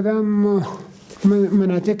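A man speaking Dari in a small room, drawing out a long held vowel before going on in short syllables.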